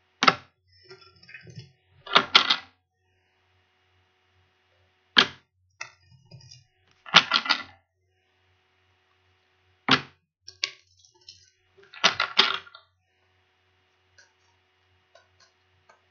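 Deck of tarot cards being shuffled in the hands. There are six quick bursts of flicking cards, one every two to three seconds, some trailed by softer riffling.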